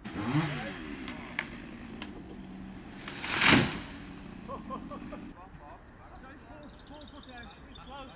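Chainsaw revving up and running, then a tall conifer crashing down through its branches about three and a half seconds in, the loudest moment. The saw cuts off about five seconds in, and voices follow.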